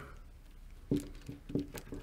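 Screwdriver backing out the top adjusting screw of an Aisin AW55-50SN transmission solenoid, one counterclockwise turn. It gives a few light ticks and clicks in the second half.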